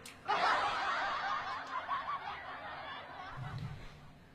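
Quiet laughter that starts a moment in and fades away after about three seconds.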